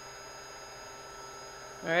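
Steady faint electrical hum with a light hiss, unchanging, then a spoken word near the end.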